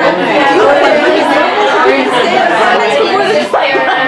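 Chatter: several people talking over one another at once.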